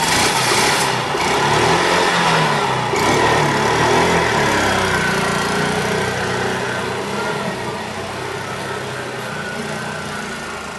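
Motor tricycle taxi (keke) engine pulling away under throttle, getting gradually quieter as it drives off.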